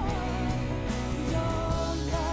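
Live worship band playing a contemporary worship song: a male and a female singer over drum kit and bass, with a steady beat of about two drum hits a second. The singers hold a long note near the end.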